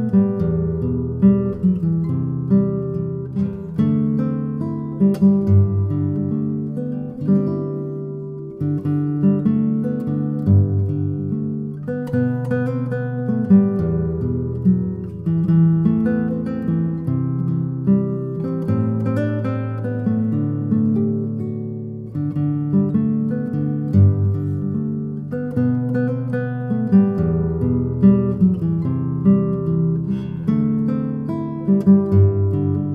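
Solo nylon-string classical guitar, fingerpicked, playing a hymn melody over held bass notes and chords.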